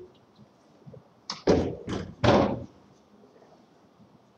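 A quick run of about four thumps and knocks, loudest near the middle, with quiet room tone before and after.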